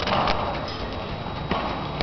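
Hoofbeats of an American Quarter Horse being ridden over soft arena footing: a few dull strikes as it passes close by.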